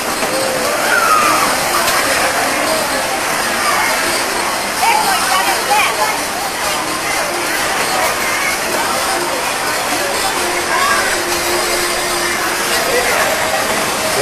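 Fairground crowd chatter: many indistinct voices, with scattered higher children's voices, over a steady hiss.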